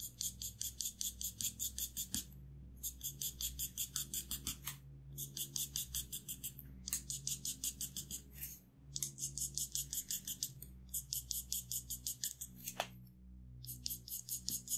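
Broad-tipped marker hatching rapidly back and forth on paper, about seven strokes a second, in runs of a couple of seconds broken by short pauses. Soft background music plays underneath.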